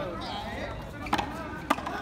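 Two sharp smacks of a frontón a mano ball being struck and rebounding off hard surfaces, about half a second apart, over voices in the background.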